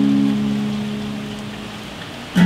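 Yamaha acoustic guitar chord struck just before and left ringing, slowly fading away, with a steady hiss of rain beneath it.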